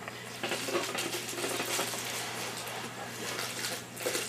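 Rustling, scratchy handling noise as a playing card and a small magic box are worked in the hands, over a faint steady low hum.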